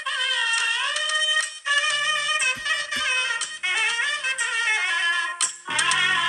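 Tamil film song playing: a singing voice over music, thin and without bass until the low end comes back in near the end.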